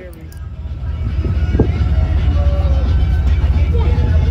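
Steady low rumble aboard a passenger ferry under way on the river, building up over the first second. Faint voices and music sound in the background.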